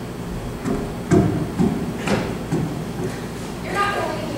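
Footsteps on a stage floor: about four heavy steps roughly half a second apart, walking pace. A voice comes in briefly near the end.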